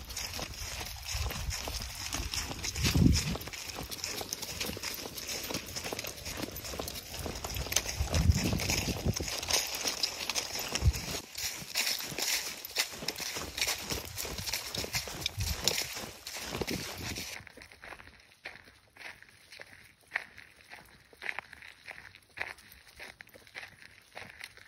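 Footsteps and a dog's paws crunching and rustling through dry fallen leaves on a dirt trail, a steady crackle broken by a couple of low rumbles. About two-thirds of the way through, the crunching becomes sparser and quieter.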